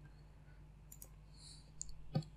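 Near silence: a low, steady hum of room tone with a few faint, short clicks about a second in and again near the end.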